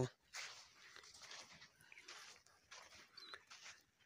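Near silence, with only a few faint, irregular rustles.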